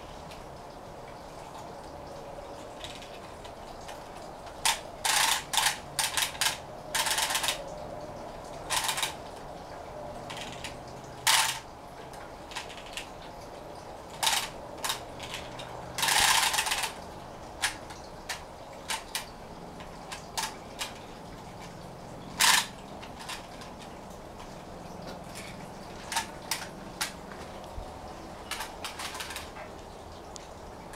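Small plastic wind-up toy being wound by hand: short, irregular bursts of ratchet clicking as the winder is turned in spurts, the longest about a second.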